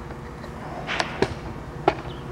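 A few short, sharp clicks and knocks from handling, about a second in, again a moment later, and near the end, over a low steady hum.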